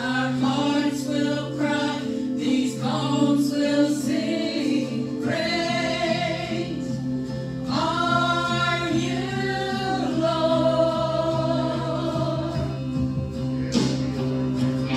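A church praise team singing a gospel worship song, with held low accompaniment notes sustained underneath.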